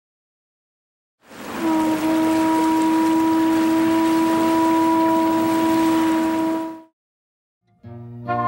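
A single long, steady horn blast over a rushing noise. It starts about a second and a half in and cuts off about a second before the end.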